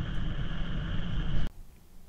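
A minivan's cabin blower fan running steadily at low speed, driven from a battery through a pulse-width-modulation controller, with an even rush of air. It cuts off suddenly about three-quarters of the way through.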